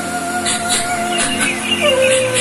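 A woman's singing voice holds one long, steady note over musical accompaniment, dropping to a lower note near the end. It is a film song played through the hall's loudspeakers.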